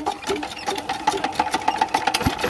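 16 hp diesel irrigation pump engine being turned over by hand to start it: a fast, even mechanical clatter.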